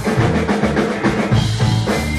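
Live rock band playing, with the drum kit to the fore over electric guitar and bass. The low bass notes thin out for about the first second and come back.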